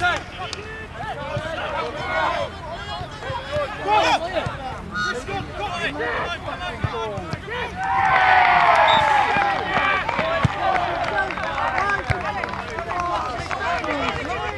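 Players calling and shouting to each other across an open football pitch. About eight seconds in, several voices shout together in a louder burst lasting about two seconds.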